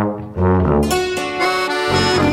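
Instrumental passage of a klezmer-style folk band song with no singing. A held chord fades and dips briefly about a third of a second in, then the band comes back in with sustained melody notes that change every half second or so.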